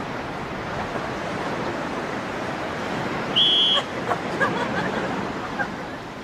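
Water splashing as a group of people wades and jumps in. A short, shrill whistle blast comes about three and a half seconds in, followed by a few brief cries.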